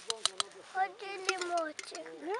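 A metal spoon clicks three times in quick succession against a glass jar as home-canned stewed meat is knocked out into the pot, followed by a high child's voice talking.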